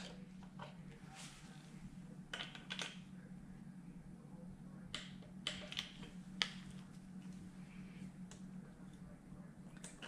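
Faint, irregular sharp clicks of a torque wrench tightening the timing-belt adjuster bolts to 25 Nm, over a steady low hum.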